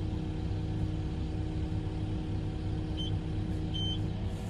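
Excavator diesel engine running steadily, with two short high electronic beeps near the end.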